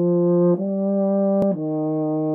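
Euphonium playing a melody of held notes about a second long, moving to a new pitch about half a second in and again about a second and a half in.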